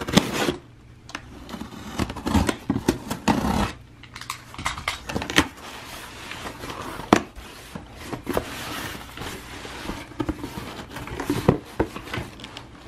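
Utility knife slitting the packing tape on a cardboard shipping box, then the cardboard flaps being pulled open and handled, with scattered clicks, scrapes and rustling.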